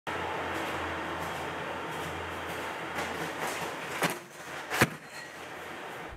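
Steady hiss of room noise with a low hum, then two sharp knocks a little under a second apart near the end as a large cardboard box is set down on a table.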